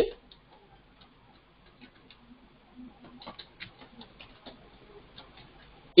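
Faint clicks of computer keyboard keys being typed, sparse at first and coming more quickly in the second half.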